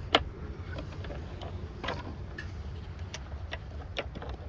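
Metal clicks and knocks from the cable head of a fibre-optic cable blowing machine as its guider, seal and airlock parts are handled and clamped. One sharp click comes just after the start and a few fainter ones follow, over a steady low rumble.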